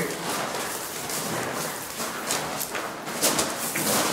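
Footsteps of a few people walking on a loose gravel floor: scattered, irregular crunches over a steady background hiss.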